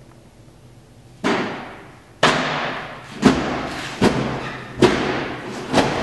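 Six heavy thuds about a second apart, each ringing briefly in a tiled room.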